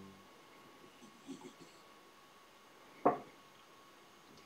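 Quiet hand work at a fly-tying vise: faint handling sounds of fingers on the fly and materials, with one short sharp click about three seconds in.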